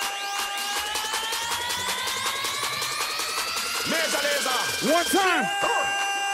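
Electronic dance music from a live DJ set in a build-up: a held synth tone rising steadily in pitch over a fast repeating hit, dropping back to a steady pitch about five seconds in.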